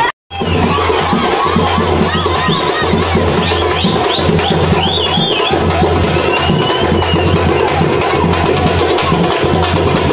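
Loud festive music with fast drumming and a crowd shouting and cheering over it, with high wavering calls rising and falling. The sound cuts out for a moment at the very start.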